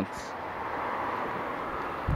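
Passing traffic on a wet road: a steady rushing tyre hiss that swells a little over the first second, then holds.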